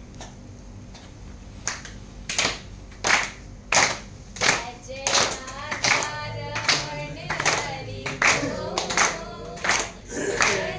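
Hands clapping in a steady beat, about one clap every 0.7 seconds, starting a little under two seconds in. About halfway through, a voice begins singing a devotional song in time with the clapping.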